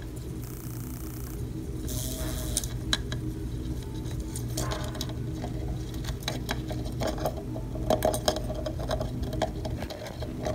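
Faint irregular ticks and scratches on a clear plastic cup holding Japanese beetles, over a steady low hum, with two short hissy rustles in the first three seconds.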